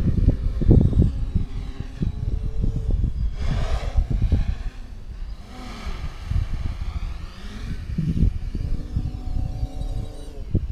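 A quadcopter's brushless motors and propellers whining in flight, the pitch gliding up and down as the throttle changes, over a louder low, gusty rumble of wind on the microphone.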